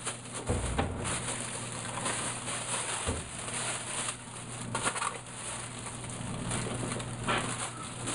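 Mylar space blanket crinkling and rustling as it is wrapped tightly around a water-filled plastic soda bottle: irregular crackles, over a steady low hum.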